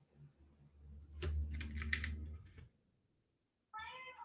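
Computer keyboard typing: a quick run of keystrokes about a second in, lasting about a second and a half, entering a terminal command.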